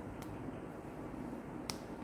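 A faint sharp click shortly after the start and a louder sharp click near the end, over steady low background noise.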